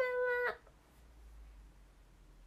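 A young woman's voice drawing out the end of a high, sing-song greeting for about half a second, then faint room tone.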